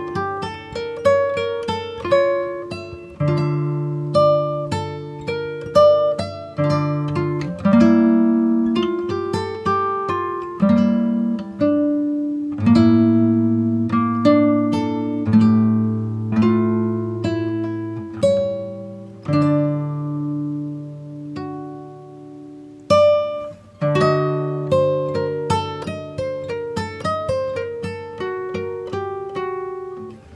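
Background music: an instrumental of plucked acoustic guitar, picked single notes ringing out over chords that change every few seconds.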